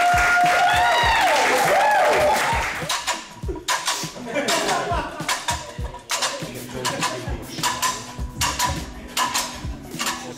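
A group of men yelling drawn-out encouragement during a bench press for the first two and a half seconds. The yelling then gives way to background music with a steady beat.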